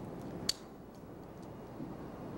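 Quiet room tone in a pause, with a single sharp click about half a second in.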